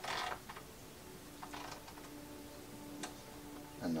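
Light clicks and rubbing from handling a metal articulated arm and its clamp knob on an eye-camera chinrest, with one sharp tick about three seconds in.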